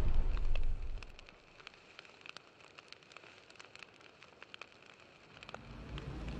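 Sound effect for a flaming outro animation. A loud rush of noise dies away in the first second, then faint fire-like crackling runs with scattered clicks, and a rush of noise builds again near the end.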